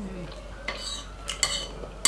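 Metal fork clinking and scraping against a dinner plate, with a few sharp, ringing clinks in the second half.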